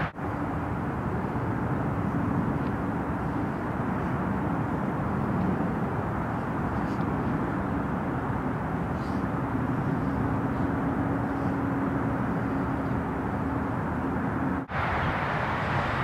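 Steady outdoor ambience: an even wash of noise with a faint low hum that comes and goes, broken by a brief drop-out near the end.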